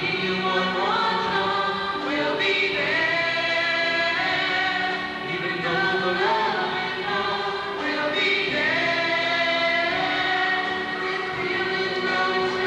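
A mixed high school choir singing together, in long held notes that change every second or so.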